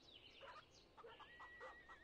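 Near silence, with faint short chicken clucks and a few bird chirps in the background.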